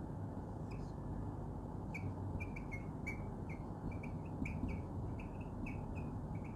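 Marker squeaking on a whiteboard while figures are written: a run of many short, quick squeaks starting about two seconds in, over steady low background noise.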